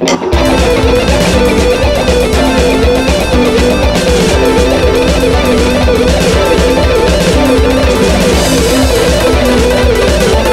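PRS electric guitar playing a fast single-string alternate-picked lick at about 240 bpm, over a backing track with a steady drum beat. It starts just after the opening.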